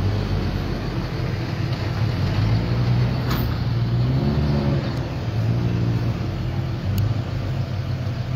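Flatbed tow truck's engine running steadily, a continuous low hum.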